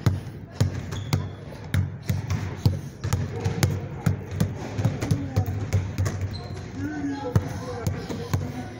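Basketball dribbled hard and fast on a hard floor in a crossover drill, about two to three bounces a second in an even rhythm.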